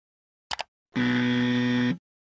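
A brief double click, then a steady buzzer tone for about a second that cuts off suddenly: a buzzer sound effect in an animated outro.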